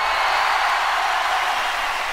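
Audience applause on a live concert recording played from a vinyl record: a steady wash of clapping with no music.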